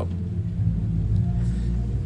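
A steady low rumble, the continuous background hum of the room, with no other event standing out.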